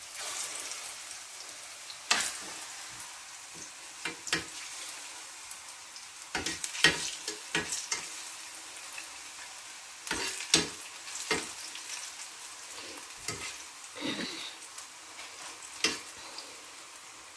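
Plantain slices frying in hot oil in a non-stick frying pan, a steady sizzle, broken by sharp clicks and scrapes of a spatula against the pan as the slices are moved about.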